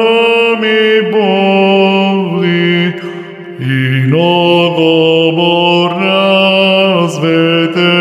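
Eastern Orthodox chant sung slowly: a melody moving over a steady held ison drone. There is a short break about three seconds in, after which drone and melody resume.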